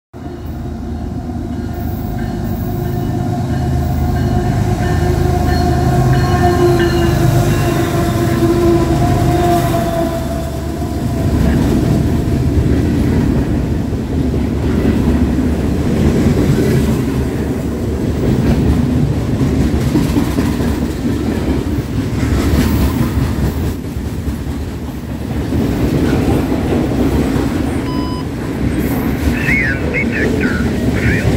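A CN freight train led by diesel-electric locomotives (an ES44AC with a UP C45ACCTE trailing) passes close by. A steady droning tone from the locomotives drops in pitch as they go by, about nine to ten seconds in. Then comes a long run of freight cars rumbling and clattering over the rails.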